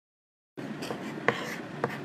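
Chalk writing on a green chalkboard: faint scratching strokes with a couple of sharp taps as the chalk strikes the board, starting about half a second in after a moment of dead silence.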